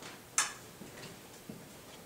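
A single sharp click about half a second in, followed by a couple of fainter ticks, over quiet room noise.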